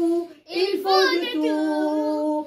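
A solo voice singing in French without accompaniment: a held note ends, a brief breath just under half a second in, then the next sung phrase starts and settles on a long held note.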